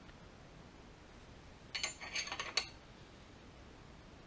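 Loose steel engine-building parts and tools clinking together: a quick cluster of several sharp metallic clinks just under a second long, about two seconds in.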